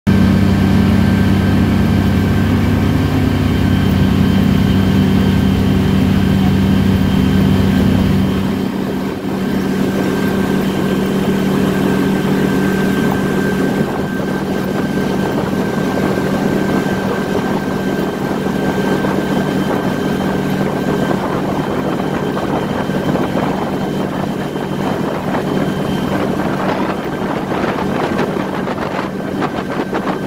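Motorboat engine running steadily at speed, with the wake's water churning and rushing. The deep low rumble of the engine falls away about eight seconds in, leaving a steady hum over the water noise.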